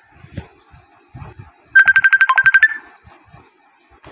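An electronic trilling ring, like a phone ringer: about a second of rapid, even beeps on one high pitch, roughly a dozen a second, about halfway through, ending on a short slightly higher note.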